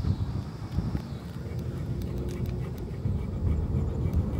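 Car driving slowly along a road: a steady low rumble of tyres and engine.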